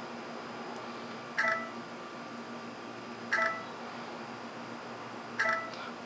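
Three short electronic beeps from a Samsung Galaxy Express's camera app, about two seconds apart. A faint steady hum runs under them.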